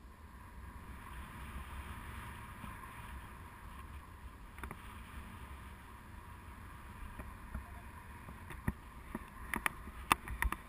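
Steady rush of wind over an action camera's microphone from the airflow of a tandem paraglider in flight, with a low rumble. A few sharp clicks come near the end.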